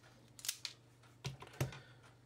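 Several short, sharp clicks from a self-adjusting wire stripper being handled just after it has stripped the end of a thick stranded copper core.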